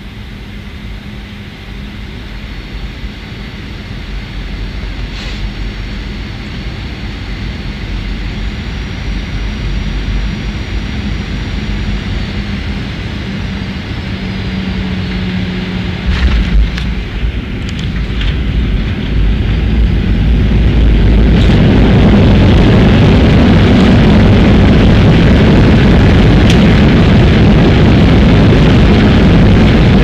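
Jet airliner heard from inside the cabin, its engine noise growing steadily louder. A few sharp knocks come about sixteen seconds in, then a loud, steady roar from about twenty-one seconds on.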